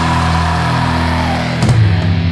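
Stoner doom metal: distorted electric guitar and bass holding a sustained chord while a higher line bends up and back down in pitch. Near the end a drum hit brings the full band back in.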